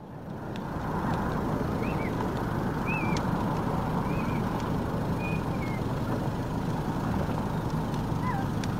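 Steady rushing outdoor noise, fading in over the first second, with faint scattered clicks and a few short high chirps about once a second.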